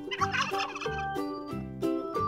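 A turkey gobbling once, a rapid rattling gobble lasting about a second, over light background music with a steady beat.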